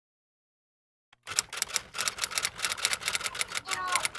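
Rapid clicking of computer keyboard keys being typed, about eight clicks a second, starting about a second in after silence.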